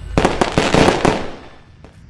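Fireworks sound effect: a quick run of pops that dies away about one and a half seconds in.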